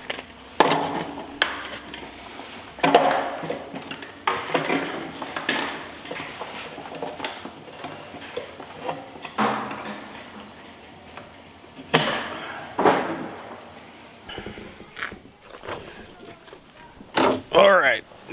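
Irregular knocks, bumps and scraping as a PVC float tree and its float-switch cables are lowered into a plastic septic tank riser and handled inside it, with indistinct low talk.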